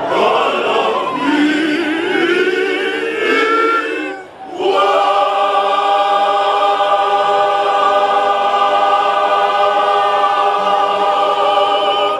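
Choir singing: several voices move through a phrase, break off briefly about four seconds in, then hold one long chord to the end.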